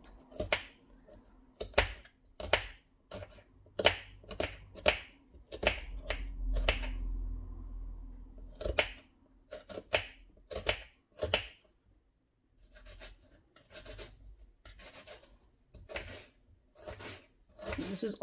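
Kitchen knife chopping an onion finely, the blade knocking down onto the work surface in a series of sharp chops, about two a second, quicker and lighter in the second half.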